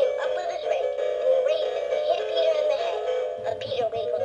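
Battery-operated Peter Rabbit soft toy playing a continuous electronic tune from its sound chip, at a steady level.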